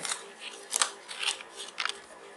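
Cardboard product box being handled and opened: a few short, sharp clicks and scrapes of card against card.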